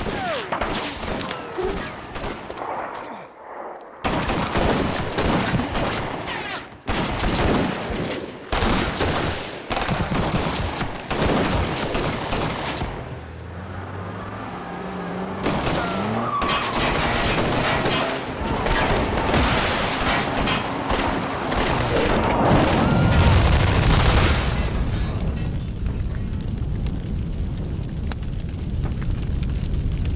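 Repeated rapid bursts of gunfire, many shots in quick succession, through roughly the first dozen seconds. After that a louder, deep rumbling noise builds and peaks a little past twenty seconds in.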